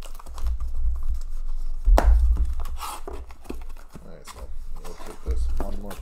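A blade slicing the packing tape along the seam of a cardboard case, then the cardboard flaps being pulled open and handled, with many small clicks and scrapes and a sharp knock about two seconds in.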